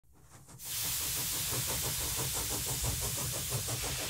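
Steady hiss of escaping steam that comes in about half a second in, with a fast, even mechanical beat beneath it.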